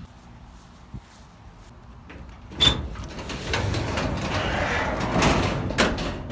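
A shed door being opened by its handle: a sharp knock, then about three seconds of scraping as the door slides open.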